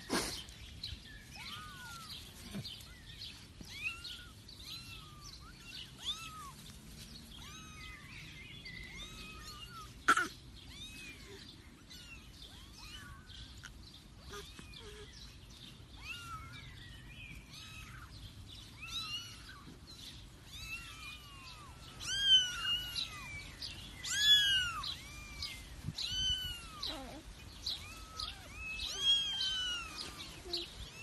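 Kittens mewing: many short, high, arching mews that repeat and overlap, growing louder in the last third. A sharp knock comes about a third of the way in.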